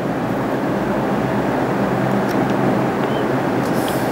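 Steady background noise, an even hiss with a faint low hum, broken only by a few faint ticks.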